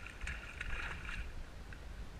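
Water splashing close by for about the first second and a half, with irregular crackles, as a hooked fish is grabbed by hand alongside a kayak.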